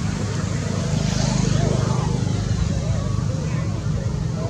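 Steady low rumble of a running motor, with people's voices in the background.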